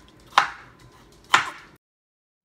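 Chef's knife chopping through raw peeled potato onto a wooden cutting board, two sharp chops about a second apart.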